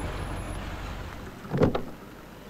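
A car's low rumble dying away, then a short loud whoosh about one and a half seconds in.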